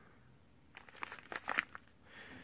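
Plastic wrapping on a fireworks cake crinkling as the cake is turned in the hand: a run of short crackles starting about three-quarters of a second in and lasting about a second.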